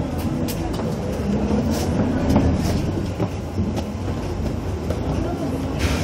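Cabin noise inside a moving vehicle: a steady low rumble of engine and road, with scattered rattles and clicks and muffled voices in the background.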